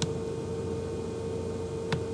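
Steady single-pitched electrical hum, with a sharp click at the start and another near the end from a computer mouse while a media player opens.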